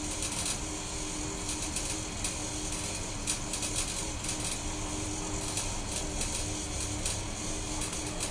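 Faint, scattered soft clicks and puffs from a man drawing on a tobacco pipe, over a steady low room hum with a faint constant tone.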